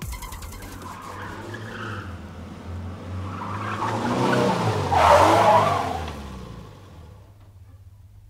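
A car speeding past with a tire skid: the engine note swells and rises, peaks with a squeal about five seconds in, then falls in pitch and fades away.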